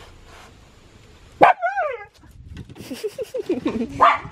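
A dog barks once, loudly, about a second and a half in, the call sliding down in pitch, then gives a quick run of short whines and yips near the end.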